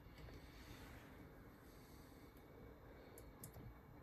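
Near silence: room tone, with a few faint light clicks a little over three seconds in.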